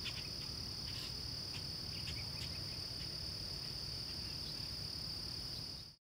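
Insect chorus, a steady unbroken high trill, with a few short faint chirps over it and a low rumble underneath.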